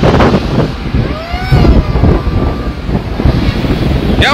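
Wind buffeting the microphone of a camera on a moving vehicle, over engine and road rumble from a car convoy on the highway, with a few drawn-out calls rising and falling in pitch about a second in.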